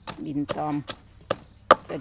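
A wooden pestle pounding in an earthenware mortar, a steady run of dull strikes at about two and a half a second, one hit near the end louder than the rest.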